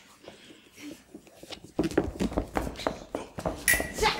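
Footwork of a stage fencing bout: shoes knocking and stamping on a wooden stage floor, starting about two seconds in, with a sharp ringing clink of foil blades near the end.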